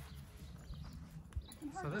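Quiet outdoor background with a low rumble and a few faint taps, then a man begins speaking near the end.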